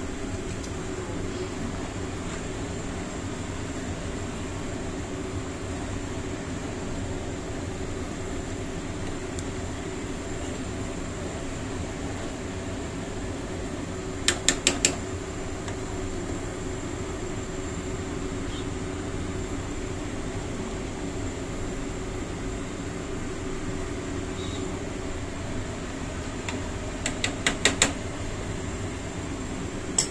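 A steady mechanical hum, broken by a quick run of four sharp clicks about halfway through and another run of clicks near the end: a plastic spoon knocking against the metal cooking pot while stirring thick porridge.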